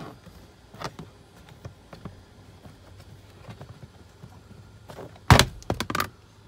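Plastic fuse-box cover under a car's dashboard being pulled off by its tab: faint clicks and scrapes as it is worked, then a loud snap and a quick rattle of clicks about five seconds in as the clips release and the panel comes loose.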